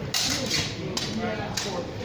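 Steel longsword blades clashing in a sparring exchange: four sharp clacks, the first and loudest just after the start and the others about every half second after it.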